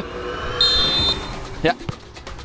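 A referee's whistle is blown once, a short steady high blast about half a second long.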